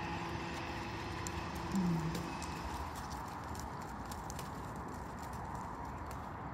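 Reindeer walking on a half-gravel, half-mud paddock: scattered sharp clicks and steps from its hooves and feet, irregular in timing. A short low voice-like sound comes just before two seconds in.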